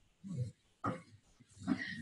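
A woman's short, breathy vocal noises through a headset microphone: two brief grunt-like hesitation sounds, then her voice starting up again near the end.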